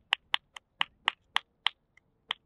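Finger snapping: a steady run of sharp snaps, about four a second.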